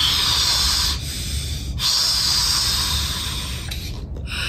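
A person blowing hard through a bendy drinking straw to inflate a balloon: two long hissing breaths, with a short pause for an inhale about a second in.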